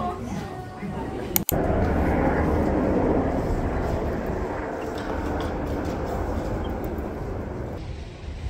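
Voices in a shop for about a second and a half, then an abrupt cut to steady outdoor street noise, a dense wash of traffic and crowd sound that eases off just before the end.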